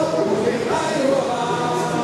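A crowd of carnival revellers singing a samba together in chorus, many voices at once.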